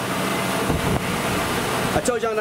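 Large outdoor fan running, its steady air stream buffeting the microphone with a low, fluttering wind rumble.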